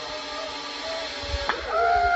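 Zip-line trolley pulley running along the steel cable as the rider comes in: a steady whine over a hiss, growing louder toward the end. About a second and a half in there is a click, followed by a short held vocal cry.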